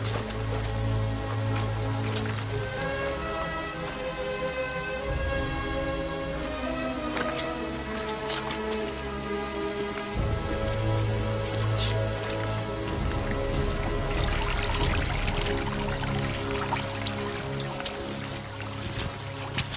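A film soundtrack of heavy rain falling on mud and water under slow, sustained music. The rain thickens near the end.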